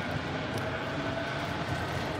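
Steady low city background rumble with a faint steady tone over it.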